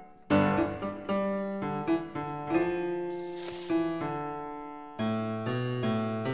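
Background solo piano music: single notes and chords struck and left to ring and fade, a new one every half second or so, with a fuller chord about five seconds in.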